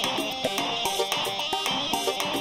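Kurdish folk dance music from the wedding band, a melody over a steady beat.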